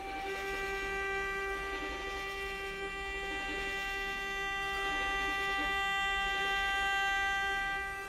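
A bowed string instrument holding one steady, high note, around G above middle C, for about eight seconds without vibrato, in a free improvisation. A lower tone at the same pitch carries on as it stops.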